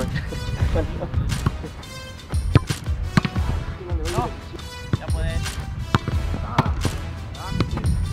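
Several sharp, irregularly spaced thuds of a football being struck and bounced, over background music.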